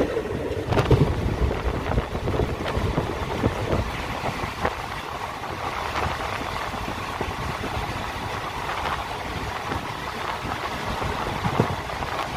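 Passenger train running at speed, heard from an open coach doorway: a steady rumble of the coaches with wind buffeting the microphone and a few sharp clicks from the wheels.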